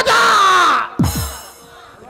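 A loud, high-pitched yell from a stage actor lasting about a second, followed about a second in by a single low drum stroke whose pitch falls.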